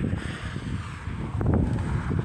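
Wind buffeting the microphone: an uneven low rumble with no clear tone or rhythm.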